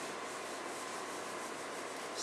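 Whiteboard eraser rubbing steadily across a whiteboard, wiping it clean.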